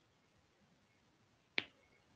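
A single sharp click from a computer keyboard or mouse about one and a half seconds in, over faint room tone.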